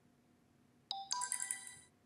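A short electronic telephone tone, a sharp cluster of high chiming notes that starts about a second in and lasts about a second.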